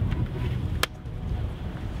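Wind rumbling on the microphone, with one sharp click a little under a second in.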